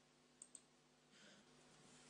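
Near silence broken by two quick faint clicks about half a second in, a computer mouse being clicked.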